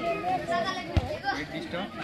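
Football spectators' voices, several people talking and calling out over one another, with one dull thump about a second in.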